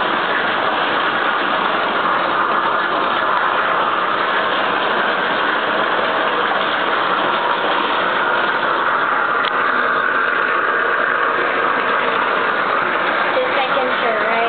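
Water running steadily into a bathtub, an even rushing hiss.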